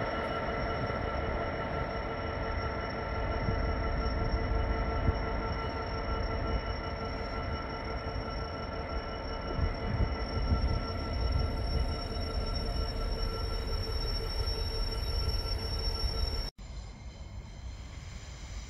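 A container freight train hauled by a Class 66 diesel rolls slowly past: a steady low rumble of wagons on the rails with several steady high-pitched ringing tones over it. The sound cuts off suddenly about sixteen and a half seconds in, leaving a quieter steady background.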